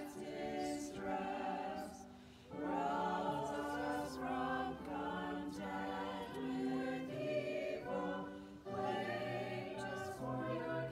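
A small group of four singers, one man's and three women's voices, singing a hymn together in held notes, with brief breaks between phrases about two seconds in and again near the end.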